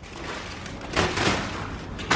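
Plastic shrink-wrap crinkling and rustling as hands handle a wrapped package, with an irregular crackle that gets busier about a second in.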